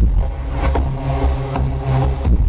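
Electro house played loud over a club sound system, in a breakdown where the kick drum drops out and sustained synth tones with a deep bass note and a hissy high layer hold on their own.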